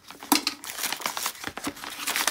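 Hands tearing and crinkling open a white mailer envelope: a quick run of rips and rustles.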